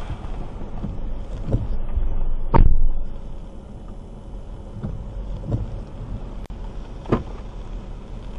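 Low, steady rumble inside a car's cabin, broken by several dull knocks and thumps. The loudest thump comes about two and a half seconds in.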